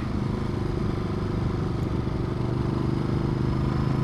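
Ducati Multistrada 1200's 90-degree V-twin engine running steadily at an even road pace, heard from the rider's seat while riding.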